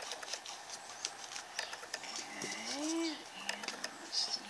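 Hands rubbing colour into a small paper journal page: light scratching and rubbing with many small ticks. A short hummed voice sound rises and falls about three seconds in.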